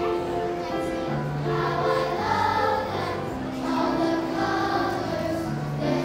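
Children's choir singing together, holding long notes that move from pitch to pitch.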